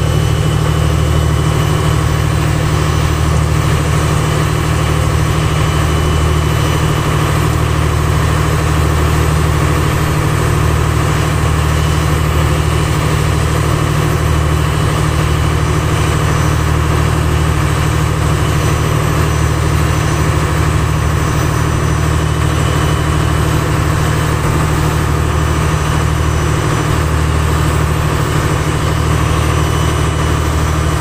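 A boat's engine running steadily, a loud, even low drone with no change in speed.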